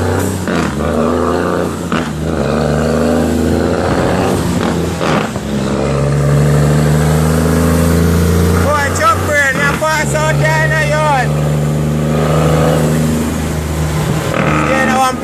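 Leyland truck's Cummins L10 diesel engine running under way, heard from inside the cab. Its note steps up about six seconds in and drops out briefly near ten seconds before picking up again.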